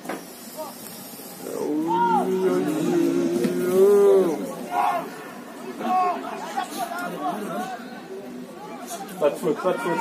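People shouting and calling out across an outdoor football pitch, with one long held shout from about two to four seconds in.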